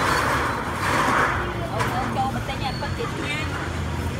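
Busy street ambience: passing road traffic, swelling twice in the first second and a half, over a steady low rumble, with people talking in the background.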